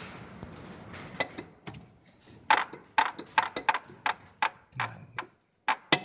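Sharp metallic clicks and knocks, about a dozen at irregular intervals, from a bolted flange under an E30 BMW being rocked by hand. Its bolts have worked loose, the cause of the clunking noise heard while driving.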